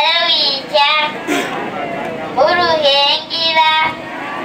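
A young girl singing into a microphone, amplified over loudspeakers. Her held, wavering notes come in phrases of about a second, with short breaks between them.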